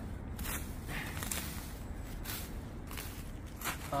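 Hand sickle cutting and tearing away dry grass and weeds, a series of short, irregular rustling swishes.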